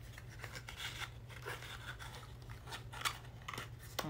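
Irregular small clicks and crinkles of a carded plastic blister pack being worked open by hand to free a small nail polish bottle, which is hard to get out.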